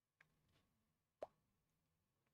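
Near silence, broken by one short, sharp click about a second in and a fainter tick just before it.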